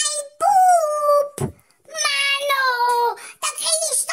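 A person's high-pitched voice in long, drawn-out sing-song tones, the second one gliding downward, with a short pause and a low thump between them.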